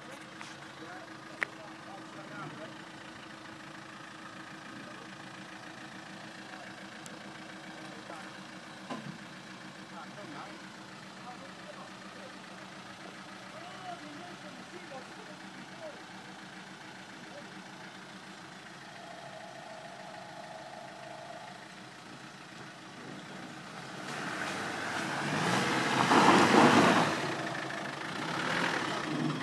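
Land Rover Defender engine idling steadily for a long stretch, then revving up loudly over the last few seconds as the vehicle drives up out of the muddy ditch.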